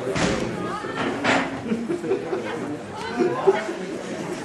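Indistinct voices of people talking near the pitch, with two short sharp knocks, one at the start and one just over a second later.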